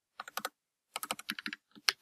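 Computer keyboard keystrokes: a few quick taps, a short pause, then a faster run of taps.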